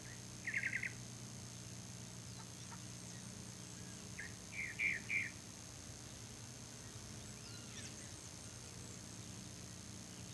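A bird calling: a quick trill of about five notes about half a second in, then a short burst of chirps around four to five seconds in, over a steady low hum.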